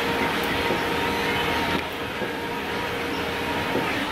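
A stair-climbing machine with revolving steps running steadily, a mechanical hum with a few steady tones; it drops a little in level about two seconds in.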